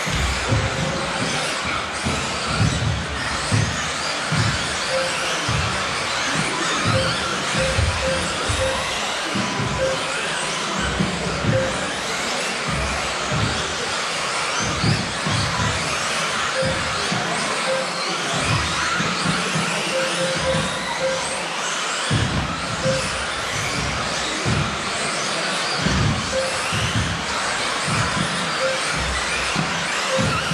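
Electric 1/10-scale 2WD off-road RC buggies racing on a carpet track, their motors whining up and down in pitch as they accelerate and brake, over music playing in the hall.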